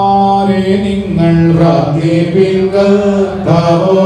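Priests' liturgical chant sung through microphones and a loudspeaker system: slow, long-held notes that step from one pitch to the next.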